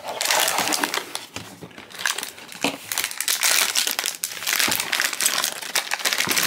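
A foil blind-box bag being crinkled and pulled open by hand to free a small vinyl figure. It makes a dense crackling rustle in two spells, with a short lull about two seconds in.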